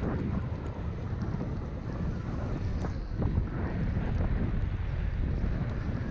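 Wind rushing over a moving action camera's microphone, a steady low rumble, with the hiss of sliding over packed snow as the rider glides down a groomed slope.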